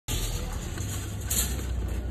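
Car engine running with a steady low rumble.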